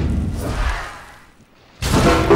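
Animated sound effect of a heavy flatbed of logs falling from a cliff: a deep rumble that fades away over about a second and a half, then a sudden loud burst near the end as it hits the sea.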